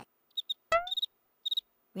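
Cartoon cricket-chirp sound effect: a few short, high chirps in an otherwise silent pause, the stock gag for an awkward silence. About two-thirds of a second in, a brief upward-sliding squeak is the loudest sound.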